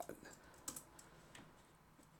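Three faint keystrokes on a computer keyboard, about two-thirds of a second apart, as a short text comment is typed.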